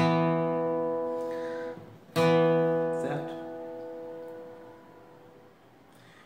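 Two-string E power chord (E and B on the 4th and 3rd strings, frets 2 and 4) picked twice on a Strinberg steel-string acoustic guitar. The first strike is cut short after about two seconds; the second rings and fades out over about three seconds.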